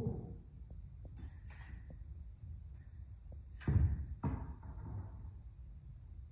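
Sparring with steel rapier and smallsword: fencers' shoes moving on a wooden hall floor and a few light clicks, with one louder thud a little before four seconds in.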